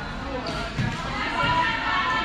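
Players' voices chattering in a large gym, with a dull volleyball bounce on the court floor a little under a second in.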